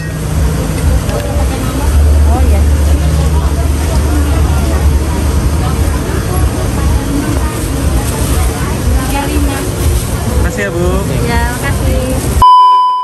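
Busy outdoor market din: indistinct voices chattering over a steady low rumble, with voices clearer near the end.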